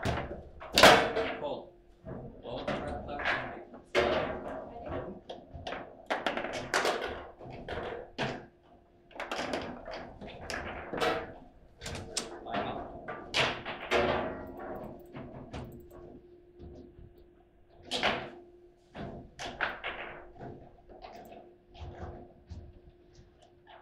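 Table football in play: a run of sharp, irregular knocks and clacks as the ball is hit by the plastic players and bangs against the rods and walls of the table. The loudest knock comes about a second in.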